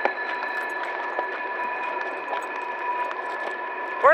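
A small pull wagon rolling over a gravel road, giving a steady scraping, crackling noise with a constant whine running through it; the wagon's axle is dragging.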